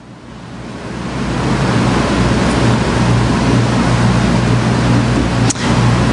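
A steady rushing noise with a low hum under it, swelling over the first two seconds and then holding, with a brief dip near the end.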